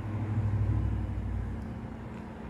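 A low rumble that swells about half a second in and slowly fades, with a few faint clicks over it.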